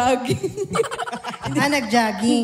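People laughing into handheld microphones, heard through the PA, in quick broken peals that jump in pitch.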